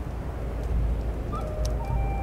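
Steady low rumbling nature ambience, a mix of volcano eruption, ocean surf and crackling fire, with a few faint ticks. A soft, held background music tone comes in near the end.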